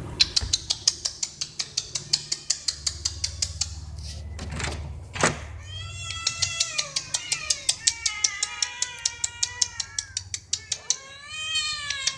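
Several cats meowing insistently, many overlapping calls from about halfway through, as they crowd together begging for food. Under them runs a steady, rapid ticking of about five clicks a second.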